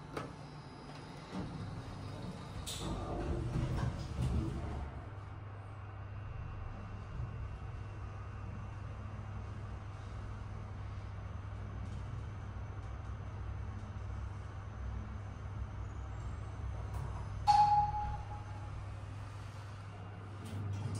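Mitsubishi Elevette Advance V passenger elevator: a button click, then the car doors sliding shut over the next few seconds. After that the car travels with a steady low hum, and near the end a single short chime sounds as it arrives at the floor.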